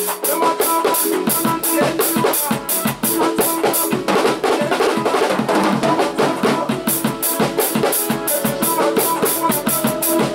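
Acoustic drum kit played in time with a recorded Xitsonga dance track: steady high cymbal strokes over kick and snare hits, with the song's pitched instruments underneath. For about three seconds in the middle the regular cymbal strokes give way to a continuous cymbal wash.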